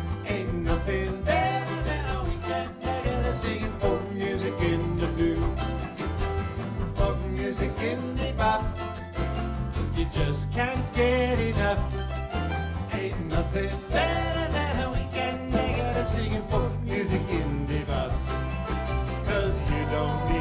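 Live folk band playing an instrumental break in a calypso rhythm: strummed acoustic guitar and picked mandolin over keyboard, drums and a steady low bass line.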